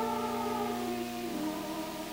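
A choir singing slow, held notes, moving to a new chord about a second and a half in.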